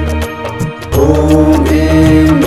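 A Hindu devotional mantra, chanted in song over instrumental backing with a steady deep drone. The music drops away briefly just after the start, and the chanting voice and drone come back in at about one second.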